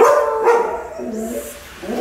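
A dog's excited cry at a gate: it rises sharply at the start, holds with a wavering pitch for over a second, then trails off. It is the sound of a dog greeting its returning owners.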